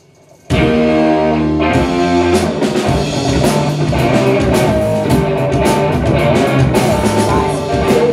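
A live rock band (electric guitar, bass guitar, drum kit and keyboard) comes in suddenly about half a second in on a held chord, and the drums join with a steady beat about a second later, playing a song's instrumental opening.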